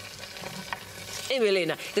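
Chopped carrots scraped off a bowl with a wooden spoon into a hot stainless steel pot, the food in the pot sizzling, with a light knock about three quarters of a second in. A voice cuts in briefly about a second and a half in.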